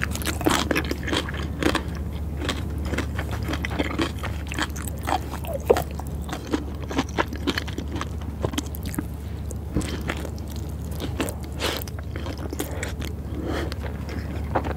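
Close-miked chewing and biting of sushi, including a scallop nigiri topped with fish roe: quick wet mouth clicks and smacks over a steady low hum.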